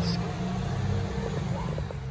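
Street ambience with the steady low engine rumble of traffic.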